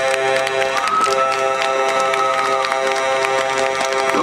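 Live rock band holding a sustained chord. A higher note enters about a second in and drops out before three seconds, with scattered claps from the audience over it.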